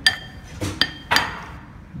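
Metal spoon stirring curry in a ceramic bowl: two sharp clinks with a brief ring, one at the start and one just under a second in, and scraping strokes against the bowl between and after them.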